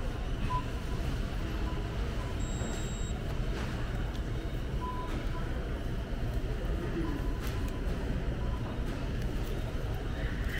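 Supermarket checkout-lane ambience: a steady low rumble with indistinct distant voices. A short, high-pitched electronic beep comes about two and a half seconds in, and a few fainter short beeps are heard elsewhere.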